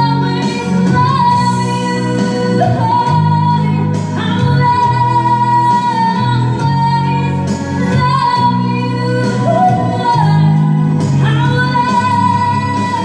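A woman singing long held notes into a microphone, amplified over instrumental backing music.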